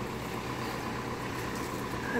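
Steady low hum with a faint steady whine above it, under constant outdoor background noise.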